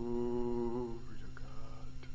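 A person's voice holding one steady note for about a second, bending slightly as it ends, followed by softer scattered vocal sounds. A steady electrical hum runs underneath.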